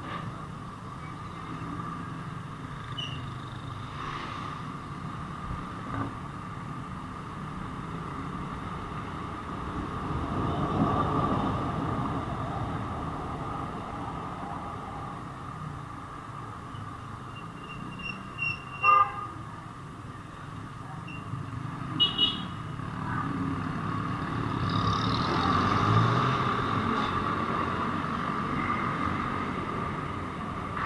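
Steady engine and road noise of a motorcycle riding in city traffic, swelling a couple of times. About two-thirds of the way in there are short vehicle horn beeps: two quick toots, then two more a few seconds later.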